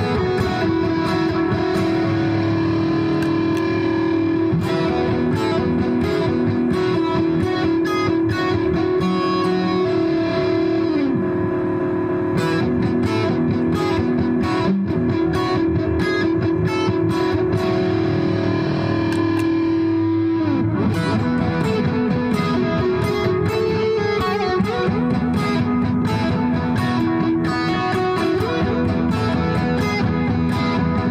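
Electric guitar played through an Eventide Rose delay pedal in the amplifier's effects loop, with the pedal's guitar/line switch set to guitar. A long note is held under other notes, and the pitch bends and shifts about twenty seconds in.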